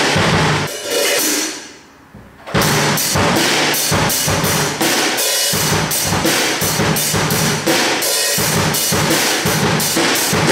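Acoustic drum kit being played: a few hits, a lull of about a second, then from about two and a half seconds in a steady beat on bass drum and snare with cymbals ringing over it.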